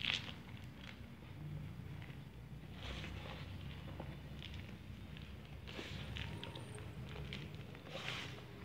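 Dry yellow soil powder and gym chalk crumbling and crunching softly as bare hands squeeze and drop handfuls, in a few separate surges: at the start, about three seconds in and about six seconds in.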